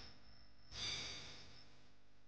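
A man sighs once, a soft breathy exhale that starts just under a second in and fades away within about a second.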